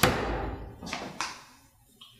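A heavy thump at the start, then two light knocks about a second in, as things are handled and set down on a kitchen table.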